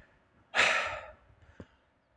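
A man's single loud, breathy sigh about half a second long, fading out, followed by a faint click. He is slightly out of breath from digging.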